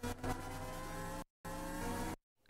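Synth riser sample playing back: a hissing whoosh with tones gliding slowly upward. A little past halfway it cuts to dead silence for a moment and then comes back, gated in and out by square gain automation.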